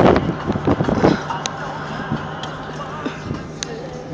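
Wind buffeting the microphone in an open convertible, easing off about a second in and leaving a steady car engine and road hum.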